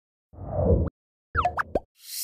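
Animated end-card sound effects: a low, swelling sound about a third of a second in, then a quick cluster of bright, rising chime-like tones near the end.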